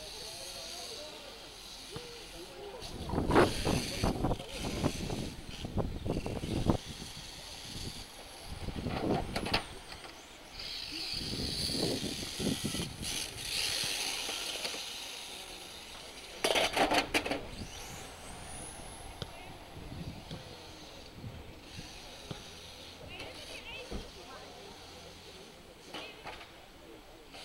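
Voices talking in the distance in irregular bursts, with stretches of high hiss and a short rising high whine from electric radio-controlled touring cars running on the track.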